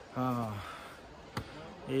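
A man's short voiced sound near the start, then a single sharp knock about two-thirds of the way through.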